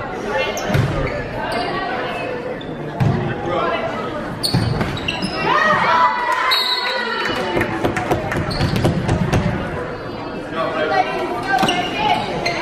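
A volleyball rally echoing in a large gym: sharp smacks of the ball being struck, mixed with players' calls and shouts from the spectators, the shouting loudest about halfway through.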